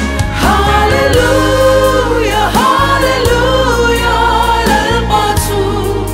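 A women's vocal group singing a Mizo gospel song in close harmony over an instrumental backing with a steady bass.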